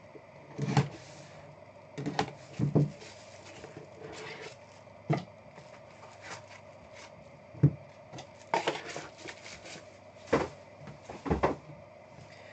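Handling of a trading card box and a plastic card holder on a tabletop: a run of separate knocks and clicks, about eight spread through the stretch, as the box lid is lifted and the encased card is set down.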